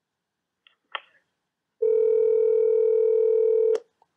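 A telephone line clicks about a second in. Then a steady dial tone sounds for about two seconds and cuts off with a click.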